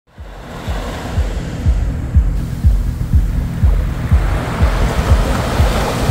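Sea waves washing onto a shore, the surf hiss swelling towards the end. Under it runs a steady low drum beat, about two thumps a second.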